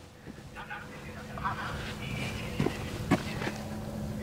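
A recorded voice announcement from a PASS Medientechnik Streethailer loudspeaker, heard faintly from about 200 m away across open fields, yet still clear and distinct. A steady low hum and two short knocks lie underneath.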